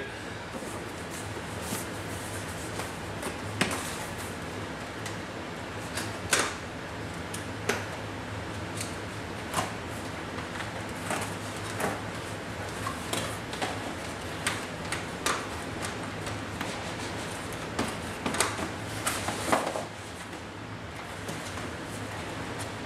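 Cardboard motherboard retail box being handled and opened: scattered light knocks, taps and rustles of the box, its flap and inner packaging, with a busier patch of handling near the end.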